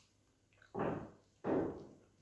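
Two short eating noises from a man chewing a mouthful of food, about half a second apart.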